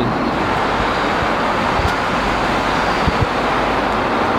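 Steady rushing noise of an airliner cabin in flight: engines and air flow, even throughout. A few soft low knocks about two and three seconds in.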